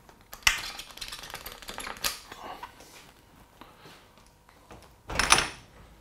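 Mountain bike front thru-axle being undone and pulled out of the fork: a run of light metallic clicks and rattles over the first two seconds, then a louder, brief thump and rustle about five seconds in as the wheel is taken out.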